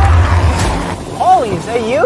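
A deep rumbling boom fades out in the first second. Then a voice comes in with wide swoops up and down in pitch, like an exaggerated cry or groan.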